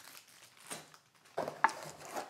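Thin plastic packaging bags crinkling as they are handled, in a few brief rustles with near quiet in between.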